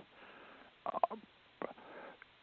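Faint breath and a few short, soft mouth sounds from a man pausing mid-sentence, about a second in and again near the end.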